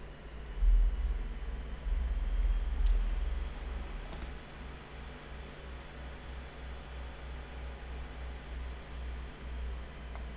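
Quiet room tone with a low rumble that swells from about half a second to three seconds in, and two faint clicks, around three and four seconds in. No music or voice is heard.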